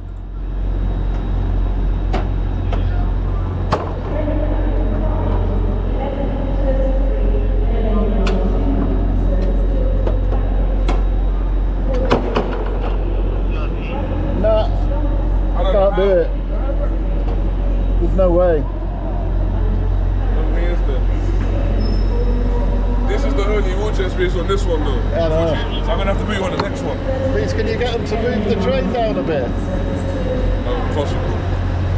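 Steady low hum of a five-car LNER Azuma train standing at the platform, with indistinct voices and occasional sharp knocks over it.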